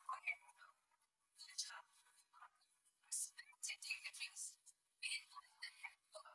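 Faint, thin-sounding speech from the student compère at the podium microphone, in about three short spells, with the low end missing and sharp hissing s-sounds.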